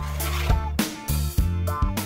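Instrumental background music with a low bass line and sharp percussion hits.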